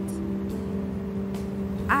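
A steady low hum with two held tones over a low rumble.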